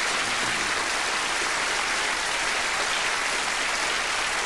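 Theatre audience applauding, steady and even throughout.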